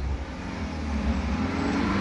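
Street noise in a pause between words: a motor vehicle going by, its engine note rising a little and then falling, over a low rumble that builds gradually.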